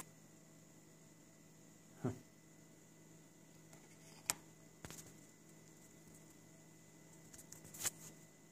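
Quiet room with a faint steady hum, broken by a few light clicks and taps from handling; the sharpest click comes about four seconds in, and there is a cluster near the end.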